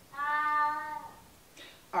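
A house cat giving one long, level meow of just under a second, soon after the start.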